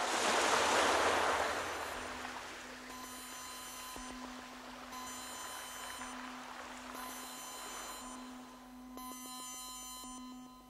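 Audio-drama sound effects: a swell of rushing noise, like surf or wind, peaks in the first two seconds and fades. It gives way to a steady electronic hum of several pure tones that drops out and returns every second or so, a science-fiction spacecraft effect.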